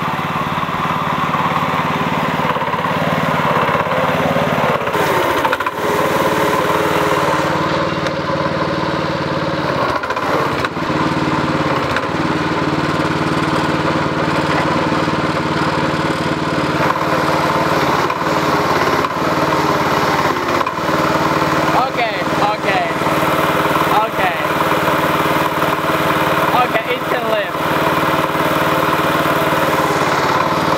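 Small engine of a homemade tractor running steadily at an even speed, while the tractor drives and works its front loader's hydraulics.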